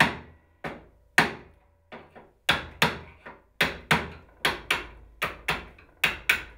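Hammer tapping the handle of a flat-blade screwdriver, driving its tip into the wood along the edge of an old window hinge to cut in the corner so it won't tear out. About sixteen sharp taps, spaced out at first and then quicker, about three a second.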